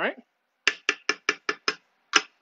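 Six quick, evenly spaced taps of a cooking utensil against the cooking pot, about five a second.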